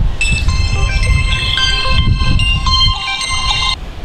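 Mobile phone ringtone: a tune of clear high notes stepping from pitch to pitch, which cuts off abruptly a little before the end as the incoming call is answered.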